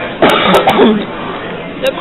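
A person coughing: one loud, rough cough about a quarter of a second in.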